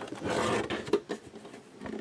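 Plastic housing of a Zoll AED scraping and rubbing as it is handled and turned over by hand, a brief rasping rub followed by a couple of light clicks.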